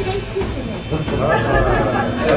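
A group of young children talking and calling out over one another, growing livelier about a second in, with background music underneath.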